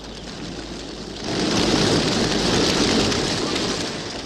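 A fire burning, a steady noisy crackle and rush that swells about a second in.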